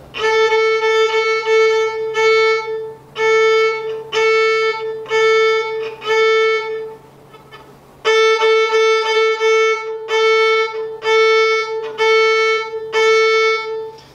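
Violin played with the bow: one note repeated in short, separate strokes, about two a second, in two runs with a pause of about a second a little past halfway. It is a demonstration of how a different contact point of the bow on the string changes the tone colour.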